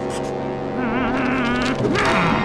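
Cartoon soundtrack: a steady low drone with the last scratchy pencil strokes in the first moment, then a wavering, trembling voice-like sound through the middle.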